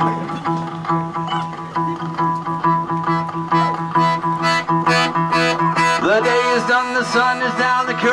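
Piano accordion holding chords over a strummed acoustic guitar, played live. A singing voice comes back in over the instruments about six seconds in.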